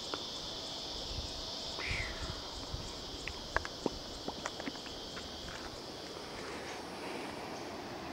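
Footsteps on a path, as irregular small clicks and scuffs, over a steady high drone of insects.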